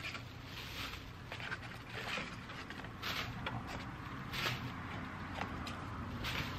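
Plastic bag of potting soil rustling and crinkling in several short irregular bursts as it is handled and soil is tipped out, over a steady low hum.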